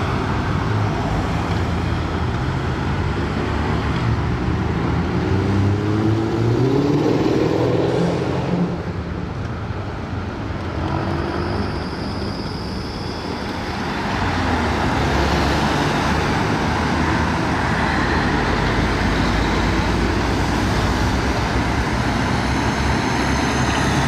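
Police motorcycles, buses and cars driving past in city traffic, with steady road noise; an engine rises in pitch as it accelerates about five to eight seconds in, and the traffic grows louder after about fourteen seconds.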